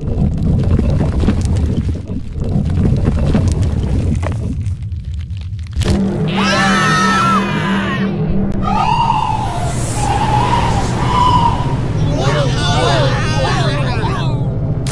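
A deep rumble for about the first six seconds, then animated characters screaming and wailing in alarm over a low droning music chord.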